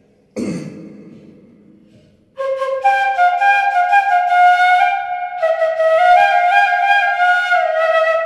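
A short cough-like noise about half a second in, then a solo bamboo transverse flute starts about two and a half seconds in, playing a film-song melody in held, stepping notes.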